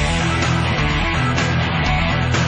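Loud rock backing music with guitar, running steadily.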